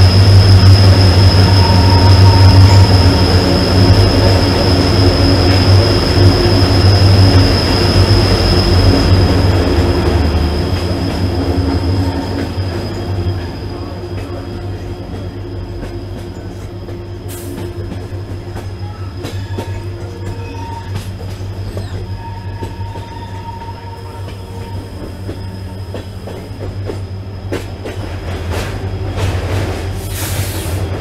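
Passenger train running through a rock tunnel, heard from an open coach doorway: a loud wheel rumble with a steady high-pitched wheel squeal. About twelve seconds in, as the train leaves the tunnel, it drops to a much quieter running noise with occasional clicks from the wheels.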